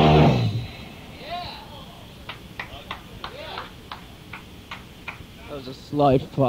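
A live thrashcore band's electric guitars, bass and drums stop abruptly in the first half-second as a song ends. Low-level studio sound follows: faint voices and a scattered series of sharp clicks.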